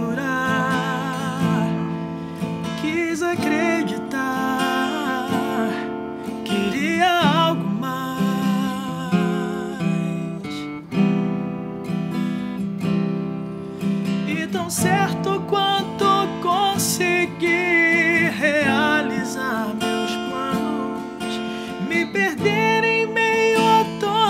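Acoustic guitar (violão) accompanying a man's singing voice in a Brazilian MPB song.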